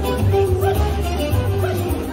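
A small dog barking in short yaps over upbeat music with a steady bass beat.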